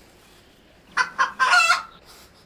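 A loud animal call about a second in: two short notes followed by a longer one.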